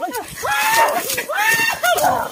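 Men shouting and yelling in several high, drawn-out cries one after another.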